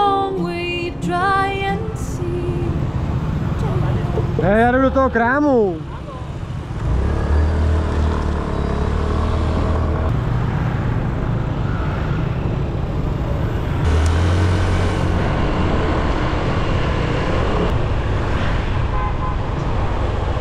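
Riding noise on a scooter in city traffic: a steady low rumble of wind and engine, swelling louder twice.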